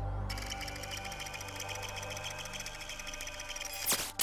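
Electronic sound effect of a fast, even chatter of clicks, like a computer processing data, over a steady synth drone, with a quick sweeping whoosh near the end.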